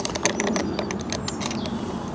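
Irregular light metal clicks and taps of small parts being fitted to a brush cutter's gearhead output shaft, as the washer is seated and the shaft is locked with the locking key. The clicks come thickest in the first second, then thin out.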